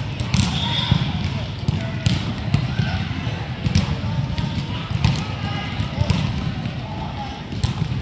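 Echoing indoor-hall hubbub of children's and onlookers' voices, with scattered thumps of a ball on the hard court floor.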